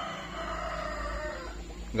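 A rooster crowing: one long crow lasting most of the two seconds.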